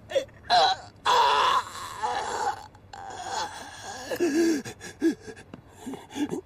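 A man groaning and gasping in pain, with a long loud cry about a second in and shorter moans after it.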